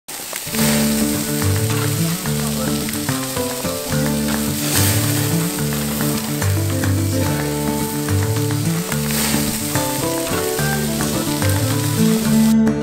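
Hamburger patties sizzling on a wire-mesh grill over hot embers, a steady hiss with a few louder flare-ups, under background music with a repeating low chord pattern.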